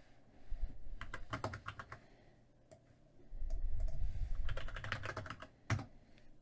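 Computer keyboard typing in two short runs of keystrokes, with a low rumble between them. A louder single keystroke near the end enters the command that runs a Python script.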